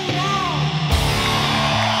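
Instrumental rock with electric guitar and bass: a high lead note bends up and falls away, then about a second in the band hits a loud chord with a cymbal crash that rings on.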